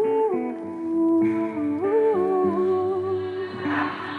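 Song intro: a wordless hummed vocal melody, with held notes that glide between pitches, over a soft, slow instrumental backing. A short swelling wash comes in near the end.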